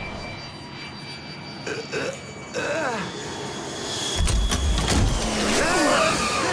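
Cartoon jet airliner sound effect: a steady engine whine over noise, with a deep rumble swelling about four seconds in. Short gliding vocal cries sound over it.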